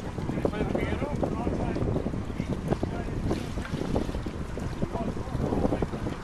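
Wind buffeting the microphone in a steady low rumble, over water running into a concrete fish raceway. Faint voices come through in the first second or so.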